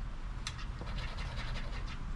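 A scratcher chip scraping the coating off a scratch-off lottery ticket: a steady run of fine, quick scrapes.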